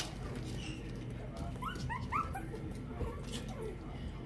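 Puppies whimpering and yipping, with a few short, high, rising squeals about halfway through.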